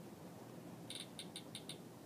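Faint key-press clicks from the IPC tester's touchscreen keyboard, about five quick, short clicks starting about a second in, one for each tap of a key.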